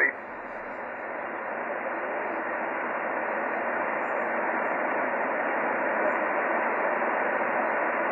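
Shortwave receiver hiss on the 15-metre amateur band in upper sideband: an even band noise limited to the narrow sideband audio passband, heard between transmissions. It grows slowly louder as the receiver's slow AGC lets the gain back up after the last signal.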